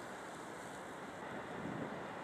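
Steady wind and sea noise, an even rush with no distinct events.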